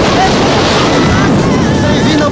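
Loud, steady wind rushing over the camera's microphone as a tandem parachute descends to land, with a few faint bits of voice under it.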